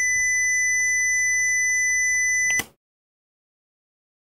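A robot speaker beeps a steady, high 2 kHz tone, the alarm this Arduino robot sounds while its surroundings are quiet. About two and a half seconds in, a sharp click is heard and the beep cuts off at once: a loud sound has crossed the robot microphone's threshold and stopped it.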